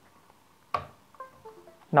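A single click as the USB receiver seats in the laptop's USB port. About half a second later comes a short run of clear descending tones: the Windows chime that signals a newly connected USB device.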